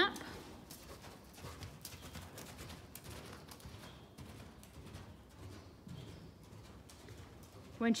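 Faint, soft thuds of a horse's hooves cantering on sand arena footing.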